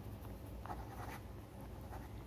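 Marker pen writing on paper: faint, scratchy strokes of the tip across the sheet.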